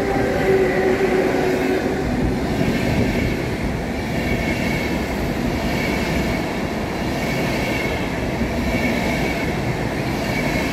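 A DSB Class EB (Siemens Vectron) electric locomotive passes close by at the head of an express, with a steady hum that fades out about two seconds in. The Intercity coaches behind it follow, rumbling and clattering over the rails, with a faint high squeal coming and going.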